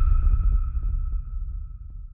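Dramatic sound design from the score: a deep low rumble under a single steady high tone, both fading away.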